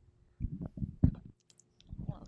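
A few soft clicks and knocks in quick succession, starting about half a second in and stopping after about a second.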